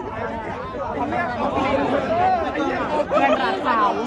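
Chatter of many students talking in Thai at once, several voices overlapping close by.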